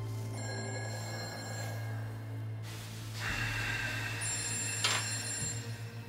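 Mobile phone ringtone ringing in two stretches of about two seconds each, over a low steady drone of background music.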